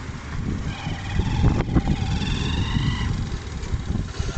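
Small motorbike riding slowly along, its engine and tyre noise mixed with wind rumbling on the microphone.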